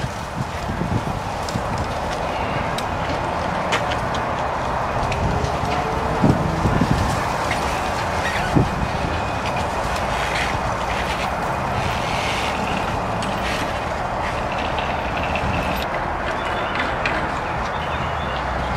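Steady rushing outdoor background noise with a few faint knocks and clicks as a BMX bike is lifted onto a car roof bike rack and set into its clamp.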